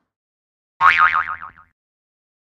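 A cartoon 'boing' spring sound effect: one loud wobbling, warbling tone starting just under a second in and lasting under a second, sinking slightly in pitch as it fades.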